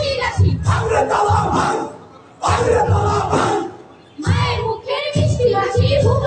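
A group of stage actors shouting and crying out together in loud bursts, broken by two short pauses about two seconds in and about four seconds in.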